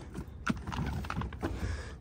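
Truxedo Sentry CT hard roll-up tonneau cover being rolled out by hand along the truck-bed side rails: a few irregular clacks and knocks from its slats and rails over a low rumble.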